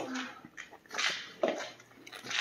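A person drinking from a plastic bottle, gulping three times in quick succession.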